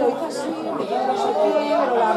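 Several people talking over one another in indistinct chatter, overlapping voices.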